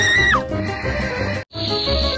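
A cartoon character's high, held scream that breaks off with a falling glide in the first half second, over cartoon background music. The sound drops out briefly about one and a half seconds in, and a hiss follows near the end.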